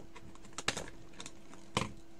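A few scattered light clicks and taps, with a sharper click a little past halfway and a heavier knock near the end, over a faint steady hum.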